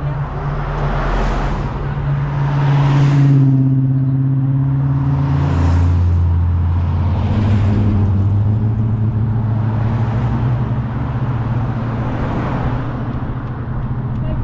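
A line of cars driving past close by, about six in turn, each one a swell of tyre noise over the low, steady running of the engines.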